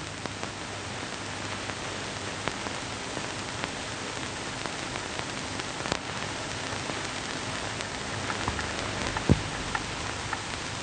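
Steady hiss and crackle of an old optical film soundtrack, with scattered clicks and pops. A short dull thump near the end.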